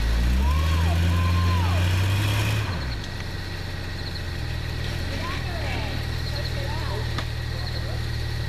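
Tractor engine revving up and running hard for about three seconds, then dropping back to a steady idle, with people calling out over it.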